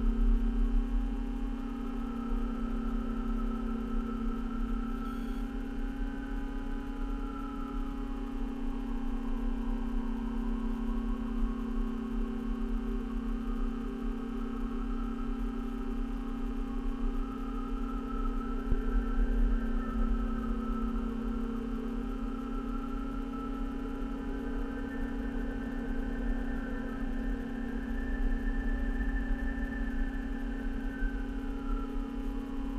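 A steady low drone with a stack of overtones, and fainter higher tones that waver and drift over it.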